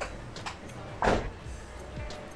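Metal forks clicking against a ceramic bowl while eating, with a short, louder sound falling in pitch about a second in.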